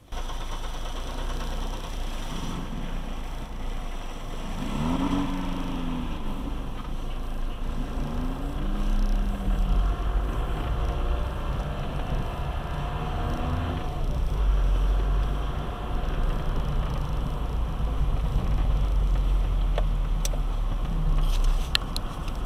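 Car cabin driving noise picked up by a dashcam: a steady low engine and road rumble, with brief pitch glides about five and eight seconds in and a few faint clicks near the end.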